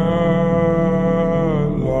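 Slowed-down, reverb-heavy pop song: a male singer holds one long note over a steady low accompaniment. The note bends down about a second and a half in, and the next note begins near the end.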